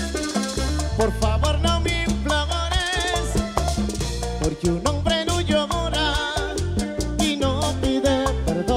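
Live bachata band playing, with guitars carrying the melody over a steady rhythm section.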